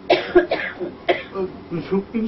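A person coughing, about three short coughs in quick succession in the first second or so.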